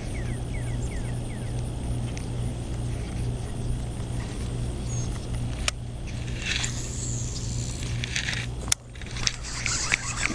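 Steady low rumble throughout. Past the middle, a baitcasting reel's spool whirs for about two seconds as line pays out on a cast, then stops with a sharp click, followed by a few lighter clicks.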